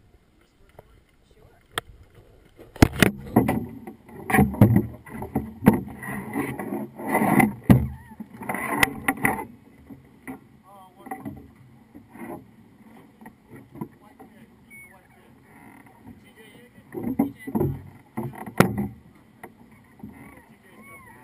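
Knocks, bumps and rubbing from a small action camera being handled and set down, with sharp clicks; busiest from about three to nine and a half seconds in, with a few more knocks near the end.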